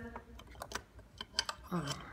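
Light, irregular plastic clicks and taps, about a dozen over two seconds, as a small black plastic cooling fan and its frame are picked up and handled.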